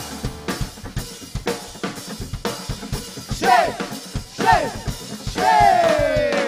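A live band's drum kit playing a break between verses, a steady run of kick, snare and rimshot hits with cymbals. A few sliding, falling notes come over the drums in the second half.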